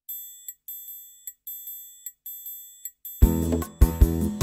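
Opening of a song's backing track: a high, repeating figure of short ringing notes, then a full beat with drums and bass coming in about three seconds in.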